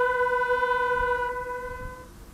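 One long held musical note, steady in pitch and rich in overtones, that thins and fades away near the end.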